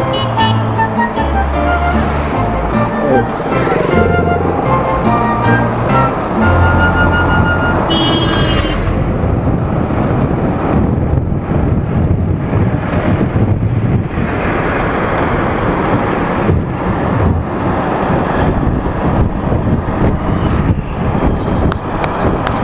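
A song with a strong stepped bass line plays for about the first eight seconds and then ends, leaving the wind rush and road noise of a vehicle driving along a road, picked up by its mounted action camera, with frequent buffeting on the microphone.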